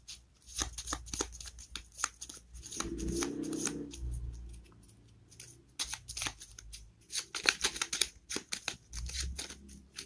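Small paper cards being handled and shuffled by hand: a run of crisp flicks and clicks that thins out around the middle and picks up again in the second half.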